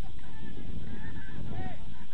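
Distant players shouting calls to each other during play, heard over a steady low rumble of wind on the microphone.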